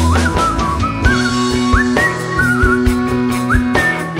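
A psychedelic rock band playing live in an instrumental passage. A high, singing lead line holds wavering notes and slides up into new ones three times, over a steady bass and drums.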